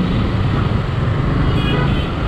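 Yamaha MT-15's single-cylinder engine running as the motorcycle rides slowly through city traffic, over a steady traffic rumble. A vehicle horn toots briefly near the end.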